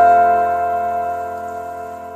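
Karaoke backing track ending on a single sustained keyboard chord, struck just before and held as it slowly fades away.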